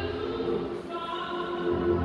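Music: a choir singing long held notes.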